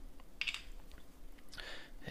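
Faint handling noises as a plastic tube of cast-iron conditioner is picked up: a few soft clicks and rustles, with a brief rustle about half a second in and another near the end.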